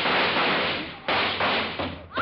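Radio-drama gunfire sound effect: several loud shots in quick succession. A short gap about a second in is followed by another sharp shot.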